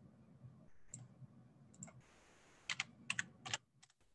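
Faint clicks of a computer keyboard and mouse: a few scattered clicks, then a quick run of about five or six key taps in the second half as a number is typed in.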